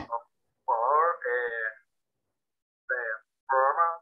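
Voices over a video call: brief laughter, then short spoken phrases, with the line dropping to dead silence between them.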